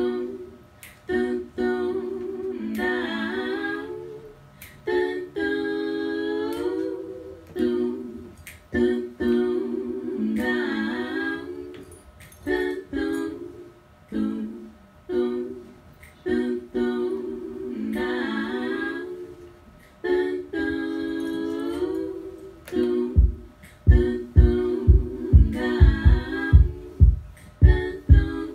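Layered a cappella female vocals, hummed and sung in a repeating phrase a few seconds long. From about 23 seconds in, a quick run of low, punchy beatboxed kick-drum thumps joins the voices.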